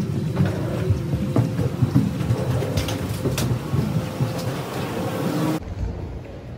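Steady mechanical rumble and hum of aircraft and jet-bridge machinery, with a few soft knocks like footsteps. It cuts off suddenly near the end into quieter terminal ambience.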